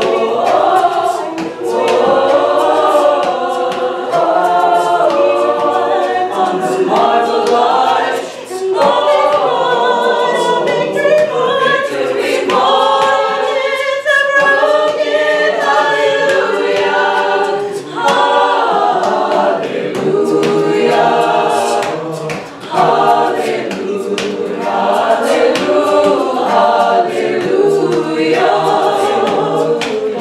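Mixed-voice choir singing a cappella, a female soloist singing lead in front of the group, with short breaks between phrases about eight seconds in and again past twenty seconds.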